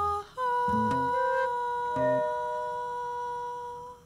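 A flute holds one long, steady note for about three seconds while an acoustic guitar plucks a couple of low notes beneath it, in a slow improvised passage; the note stops just before the end.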